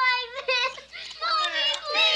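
A young girl crying and wailing in high-pitched, wavering sobs.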